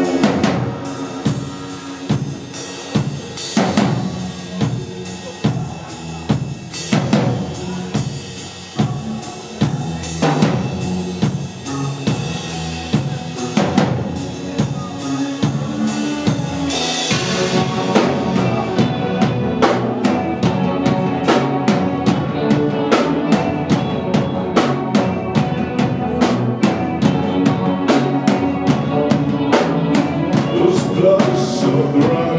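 Rock band playing live: an instrumental stretch of drum kit, electric guitar and bass. Sparse, heavy drum hits with guitar chords ringing between them, then a cymbal crash about 17 seconds in and the full band driving on with a steady beat.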